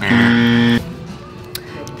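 A loud, steady electronic tone with a rich buzz of harmonics, dropped in as a sound effect. It is held for just under a second and cuts off abruptly, leaving quieter background music.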